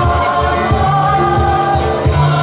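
Mixed choir singing held chords, with a cajon keeping a steady low beat about every 0.7 seconds.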